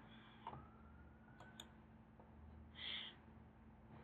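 Faint computer mouse and keyboard clicks, a few single clicks over a low steady hum, with one brief higher-pitched sound about three seconds in.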